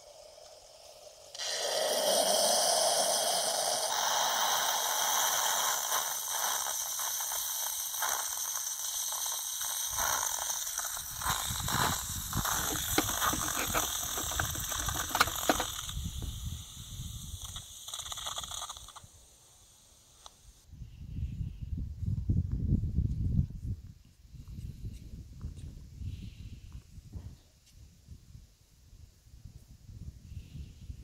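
Tassimo pod machine running its brewing cycle: a loud hiss with pump noise starts about a second and a half in and lasts some seventeen seconds, turning to sputtering and spitting in its second half as the cycle ends. After it stops, irregular low rumbles and knocks follow.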